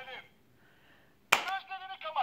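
A single sharp slap of a hand on the plastic dial of a Ben 10 Omnitrix toy watch about two thirds of the way in, followed at once by a short voice.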